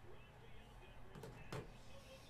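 Faint room tone with a steady low hum and distant, indistinct speech, likely a TV broadcast in the background. A couple of soft knocks come just past a second in.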